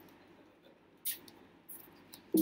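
Two short clicks over a faint room hum: a sharp one about a second in, and a fainter one about half a second later, like a computer mouse button being clicked.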